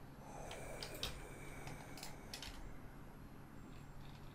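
Faint clicks of a computer keyboard and mouse, a handful of separate clicks in the first two and a half seconds, over a low steady hum.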